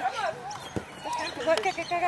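A spectator shouting encouragement to football players, calling "Go, go, go" near the end, with a few dull thuds from the players running and kicking on the grass.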